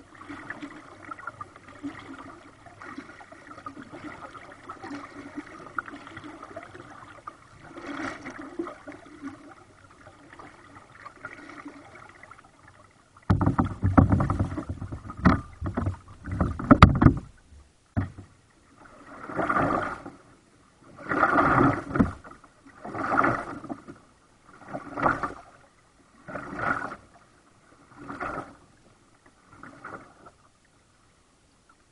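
Kayak paddling on flat water: faint water noise at first, then a sudden louder spell of rumbling and knocks a little before halfway. From about two-thirds of the way in come regular paddle strokes, one splash about every 1.8 s, six in a row.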